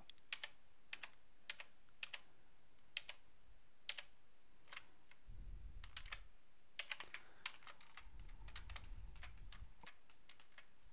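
Faint computer keyboard keystrokes: scattered single key clicks, with a quick run of several keystrokes about seven seconds in. A low rumble comes in twice in the second half.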